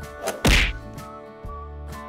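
A single sharp cartoon whack sound effect about half a second in, over background music.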